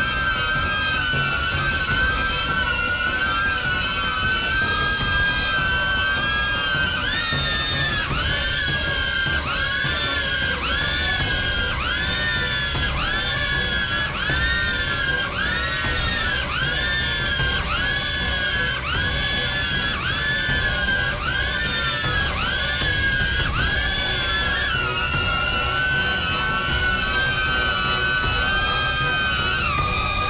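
DJI Neo mini drone's propellers whining as it hovers under a 40-gram payload. From about seven seconds in, the pitch surges up and sags back roughly once a second for some fifteen seconds, the motors straining to hold the weight. It then steadies and dips slightly near the end.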